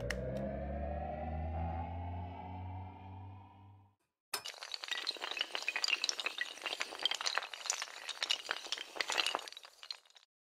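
Logo-animation sound effects: a rising tone over a low rumble for about four seconds, then a short gap, then a long clattering shatter of breaking glass and tumbling pieces lasting about six seconds.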